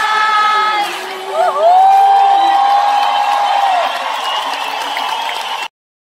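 Live outdoor concert: a singing voice holds one long note over the cheering of a large crowd, and the sound cuts off suddenly near the end.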